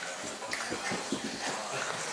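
Quiet room with faint shuffling and a few soft knocks as a toddler moves across the carpet and drops onto a blanket, with one sharper click about half a second in.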